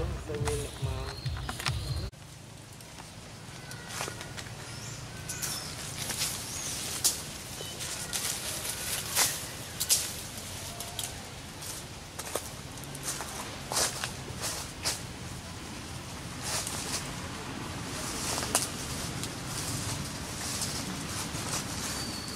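Outdoor sound of scattered crackles and rustles, like dry leaf litter being moved or stepped on. For the first two seconds it sits under a low rumble and a faint voice, then it drops quieter.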